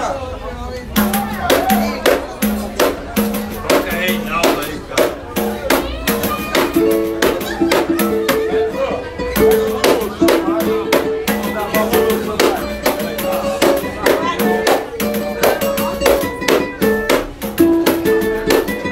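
Live pagode samba music: a tall wooden hand drum and a pandeiro beaten in a quick, steady rhythm, with plucked string notes over it.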